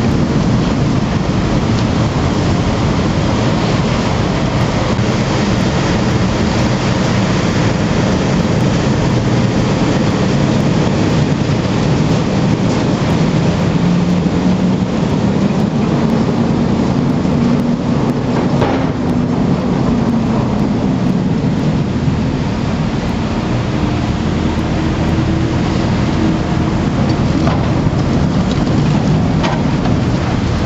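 Machinery inside the Silver Spade, a Bucyrus-Erie 1950-B electric stripping shovel, running loud and steady as the deck and upper works swing, with a low hum that climbs in pitch through the middle and a brief click partway through.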